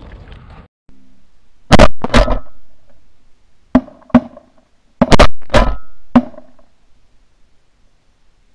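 Shotgun blasts, about eight sharp reports in quick, uneven volleys over some four and a half seconds, several of them doubled close together.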